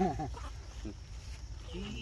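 A macaque giving a short, high, wavering squeal near the end.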